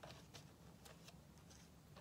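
Near silence: room tone with a few faint ticks of paper being handled and pressed down on a table.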